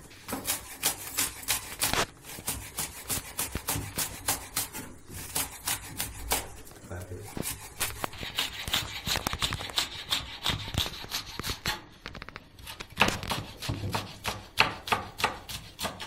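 Chef's knife slicing long green peppers into thin rings on a wooden cutting board: a quick, steady run of knife strikes against the board, several a second.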